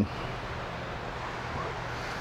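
Steady outdoor background noise: an even hiss with wind in it and no distinct events.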